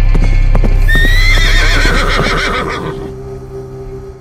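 Sound-effect horse hooves galloping over a deep music drone, with a horse neighing from about a second in. The sound fades at about three seconds into a single sustained musical tone.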